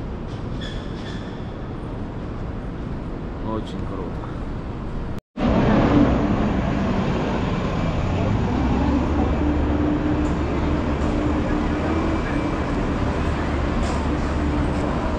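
City street traffic. Quieter background noise until an abrupt cut about five seconds in, then louder traffic with the steady low hum of a bus engine idling close by.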